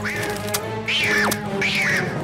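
Three short, shrill cartoon-voice squawks, each falling in pitch: an animated character yelling angrily in wordless gibberish, over background music.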